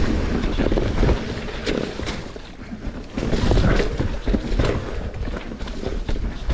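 Wind buffeting the microphone of a bike-mounted camera during a fast mountain-bike descent, under the rumble and rattle of the tyres and bike over dirt, roots and rocks, with several sharp knocks from bumps in the trail.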